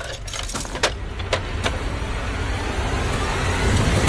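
Metal handcuffs clicking and rattling against a bamboo pole, several sharp clicks in the first second and a half. A low rumbling swell then builds steadily louder.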